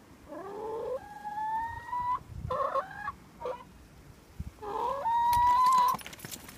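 Domestic hens calling: a rising call about half a second in, then a long drawn-out call that climbs slightly in pitch, a few short clucks around the middle, and a second long rising call near the end, the loudest, which cuts off suddenly.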